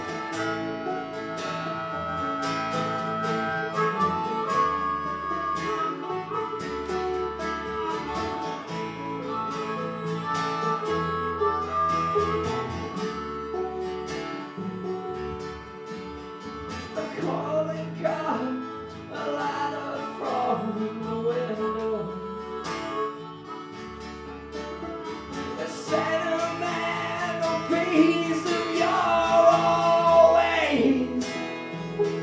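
Live bluegrass band playing: banjo picking, acoustic guitar strumming and harmonica over a pulsing upright bass line.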